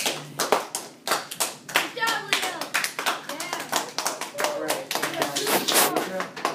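A small audience of students applauding: many hands clapping quickly and irregularly, with voices talking over the clapping.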